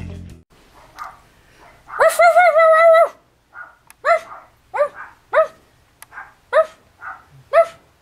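A woman imitating a dog: one long wavering howl, then a row of short barks, about one a second.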